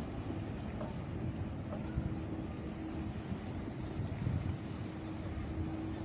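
Wind buffeting the phone's microphone in an uneven low rumble, with a faint steady hum underneath from about half a second in.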